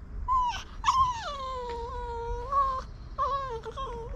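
Small dog whining: a brief rising whimper, then a long high whine that slides down in pitch and holds for about two seconds, followed by a few shorter whines near the end.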